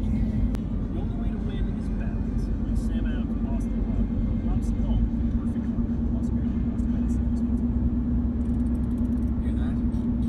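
Steady road and engine rumble of a moving Ford car heard inside its cabin, with a constant low hum.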